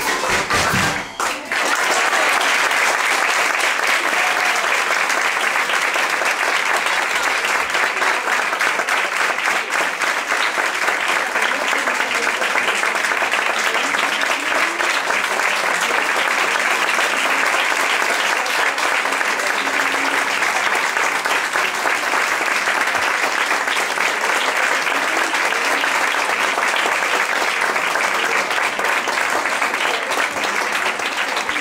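A folk trio of accordion, drum kit and wind instrument sounds its last note, which stops about a second in, and an audience breaks into steady, sustained applause.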